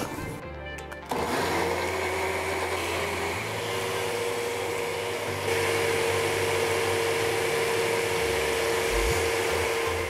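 Countertop blender running, puréeing a thick huancaína sauce of ají amarillo, fresh cheese, soda crackers and evaporated milk. It starts about a second in and runs steadily, a little louder from about halfway.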